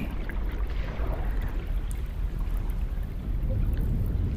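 Steady low rushing water noise with a deep rumble, like underwater or aquarium water ambience, with no distinct events.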